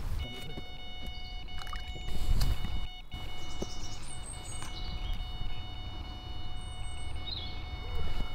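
Carp bite alarm sounding one continuous steady tone as a fish takes line on a run, with brief rustling and footfalls as the angler runs to the rod. A few short bird chirps come over the top.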